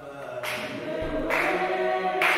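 A group of voices singing together unaccompanied, growing louder as more voices join in.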